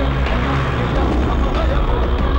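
Loud film background score with a steady bass line, mixed with the sound of motorcycle engines running.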